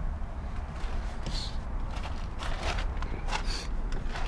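A few short scraping and rustling sounds of plastic interior trim, the hatch privacy cover, being handled and worked loose, over a steady low rumble.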